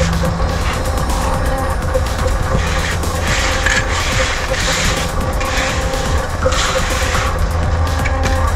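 Background electronic music with a steady beat.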